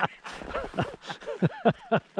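People laughing heartily, a run of short ha sounds falling in pitch, several a second.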